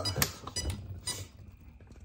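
A few sharp plastic clicks and light clinks, the loudest about a quarter second in, as a hand pulls at the body and front shock-tower area of an Arrma Limitless RC car to work the body off.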